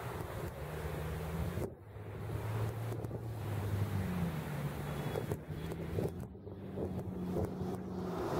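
Wind buffeting the microphone over the low, steady drone of a distant engine: a 1999 Jeep Cherokee XJ with an APN header, high-flow cat and Magnaflow Magnapack exhaust, running at low revs far off.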